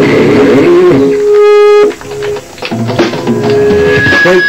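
Live rock band with electric guitar and drum kit playing the closing of a song: a long held guitar note over cymbals and drums, the sound dropping off sharply about two seconds in, then scattered drum hits and guitar before the final chord.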